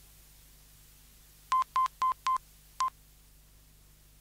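Five short electronic beeps at one steady pitch, four in quick succession and then one more a moment later, over faint steady hiss and hum.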